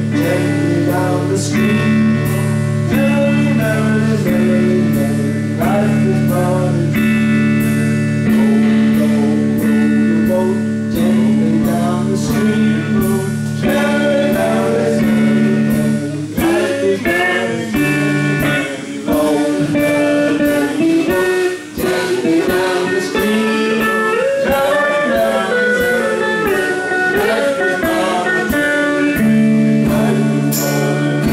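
Live band playing: electric guitars, bass and drums with a steady beat, with singing over it. Long held low notes give way to a busier, shifting melody about halfway through.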